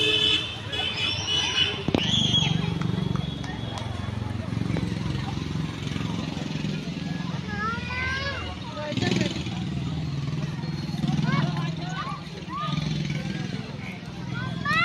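Outdoor background of people's voices talking over traffic noise, with a vehicle horn tooting briefly right at the start.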